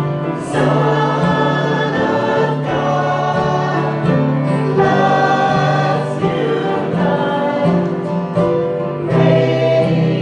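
A small church choir of mixed men's and women's voices singing together, with long held notes.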